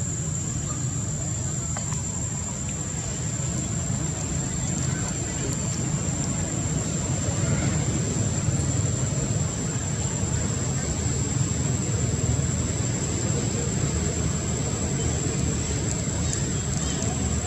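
Steady low outdoor background rumble with a thin, constant high whine above it; no distinct events.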